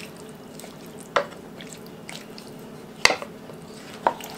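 A wooden spoon stirring chunky vegetables and broth in a crock pot: quiet wet squishing, with two sharp knocks about two seconds apart, the second louder.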